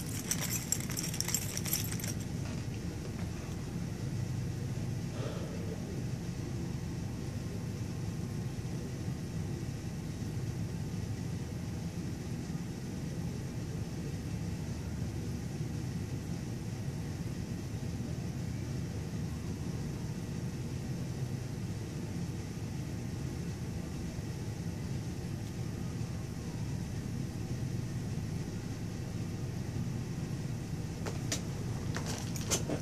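Steady low background rumble with no distinct events, plus a brief high jingle or clink in the first couple of seconds.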